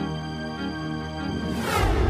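Dramatic background music with sustained held chords. About a second and a half in, a sweeping sound effect with a deep rumble swells up and grows louder.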